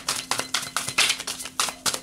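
A tarot deck being shuffled by hand, the cards clicking and slapping against each other in a quick, uneven run.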